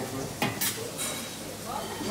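Stainless-steel roll-top lid of a buffet chafing dish being rolled open, with two sharp metal clanks about half a second in.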